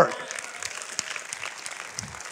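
Church congregation applauding softly and steadily.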